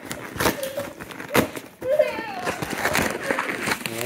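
Toddlers' babbling voices, with a few sharp clicks and rustles of a plastic toy bag being opened.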